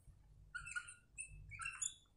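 Whiteboard marker squeaking faintly against the board in a few short squeaks while writing a fraction.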